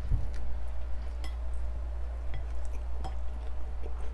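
Biting into and chewing a slice of crunchy toast close to a clip-on microphone: a soft bite just after the start, then scattered small crunches and clicks, over a steady low hum.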